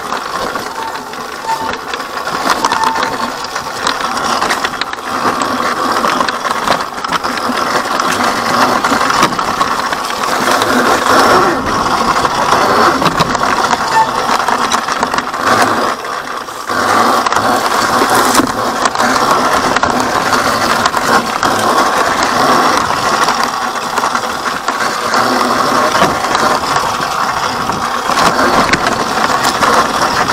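Electric dirt bike riding slowly over a rocky trail: a continuous rattle and clatter of the bike's parts with tyres crunching over rocks and leaf litter, getting louder about ten seconds in, with a brief dip around sixteen seconds.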